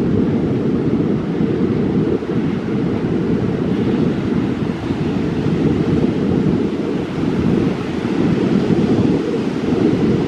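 Ocean surf breaking on a sandy beach, mixed with wind blowing across the microphone as a steady, loud low rush.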